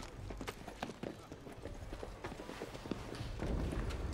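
Irregular hard footsteps and knocks of several people on stone steps, with a low rumble swelling near the end.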